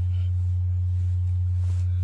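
A steady low hum, one unchanging low tone with nothing else over it.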